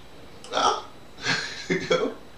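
A man making two short wordless vocal sounds: a quick breathy one about half a second in, then a longer voiced one in the second half.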